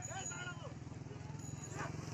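Players and spectators calling and shouting during an outdoor volleyball rally, with a steady low hum underneath.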